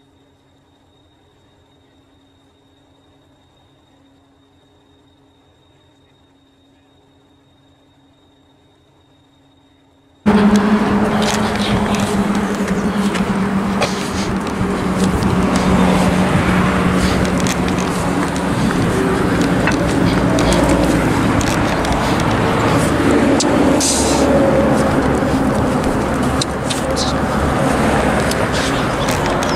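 A faint steady hum with a low tone and a thin high whine, then about ten seconds in a sudden jump to loud street sound: road traffic running past a pavement, a continuous rush of noise with a low engine drone for several seconds.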